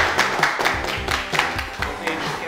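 A small group clapping their hands in a steady beat, over background music.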